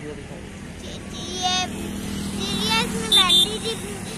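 Brief snatches of people's voices talking over the steady low rumble of road traffic.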